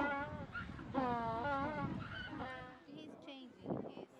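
African penguins braying: a series of honking, donkey-like calls with wavering pitch. The longest call starts about a second in and lasts nearly a second, and shorter, fainter calls follow.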